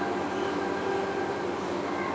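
Long-reach demolition excavator running steadily, its diesel engine and hydraulics making a continuous hum with a faint high whine.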